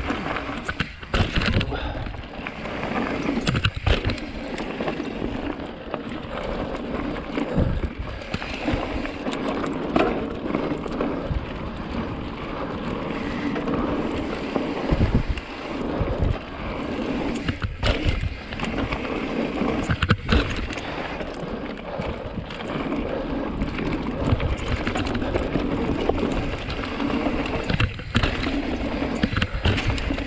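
Mountain bike riding fast down a rough gravel and dirt trail: continuous tyre rumble and wind on the microphone, broken by frequent clattering knocks from the bike over bumps and jumps.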